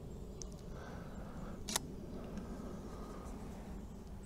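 Nikon D800 digital SLR's shutter firing once: a single short click a little under two seconds in, over a faint steady outdoor background.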